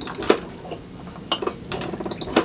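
A few light clinks and knocks as a pour-over coffee dripper is handled on a mug, the sharpest about a third of a second in.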